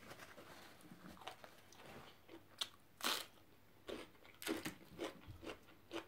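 A person chewing food close to the microphone: a string of short sharp crunches and mouth sounds, the loudest about three seconds in.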